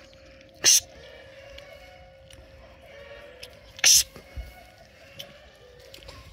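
Two short, sharp, hissy puffs of breath about three seconds apart, over faint background music with steady held notes.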